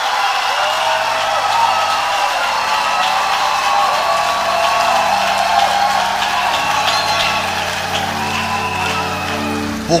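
A congregation cheering and clapping, many voices calling out at once, with sustained keyboard chords coming in underneath about halfway through.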